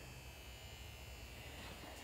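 Faint steady low hum with a thin high whine above it: the background room tone.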